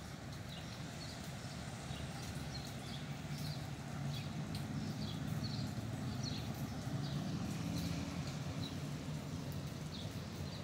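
Small birds chirping repeatedly over a steady low rumble that grows louder about four seconds in.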